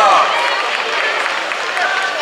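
A man's voice talking, trailing off in the first moments and coming back briefly near the end, over a steady background of crowd noise.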